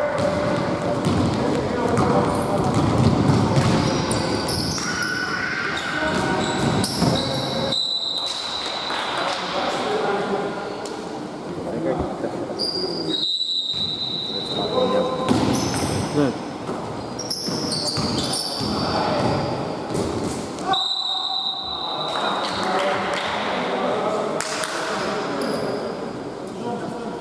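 Basketball game in a large gym: a ball bouncing on the hardwood court and players' voices echoing around the hall. Three times a thin, high steady tone sounds for about a second.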